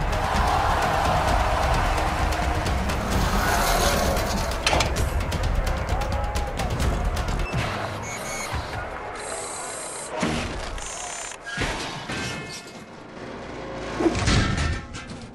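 Music over a dense, heavy rumble, then, from about halfway, a run of sharp metallic clangs and crashes: a heavy metal gate slamming and bursting open.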